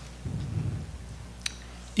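A low, muffled rumble in the first half, then a single sharp click about a second and a half in.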